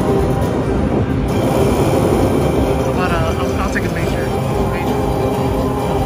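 Zeus Power Link video slot machine playing its bonus music and sound effects as the final hold-and-spin round ends and the prize tally screen begins, over a steady casino background noise.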